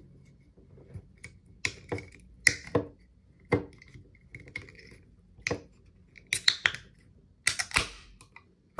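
Fingernails clicking and scraping against the aluminium pull-tab of a Tsingtao beer can as it is pried at again and again without giving, a run of sharp separate clicks. Near the end a quick cluster of louder clicks as the tab finally lifts and the can opens.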